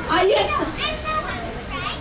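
Children's voices chattering and calling out, mixed with speech.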